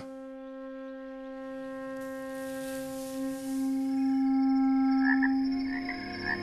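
Film score: one long wind-instrument note held at a steady pitch, growing louder about halfway through, with a few short higher notes near the end.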